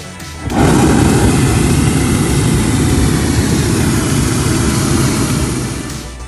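Hot-air balloon's propane burner firing in one long blast of about five seconds, starting suddenly about half a second in and dying away near the end. Background music runs underneath.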